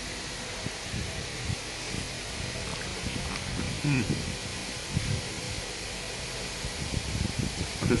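Soft chewing and mouth sounds of someone eating, heard as scattered small low clicks over a steady background hiss, with a brief closed-mouth "hmm" of enjoyment about four seconds in.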